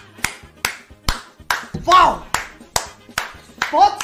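Rhythmic hand claps, about two to three a second, with a short vocal sound about two seconds in and again near the end.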